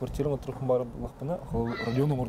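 Speech only: a man talking continuously in conversation.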